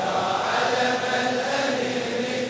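Group of men's voices chanting a Shia latmiya lament together, drawing out one long held note.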